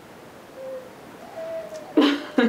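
A person's voice making two drawn-out hums over quiet room tone, the second a little higher and longer, held for most of a second near the end.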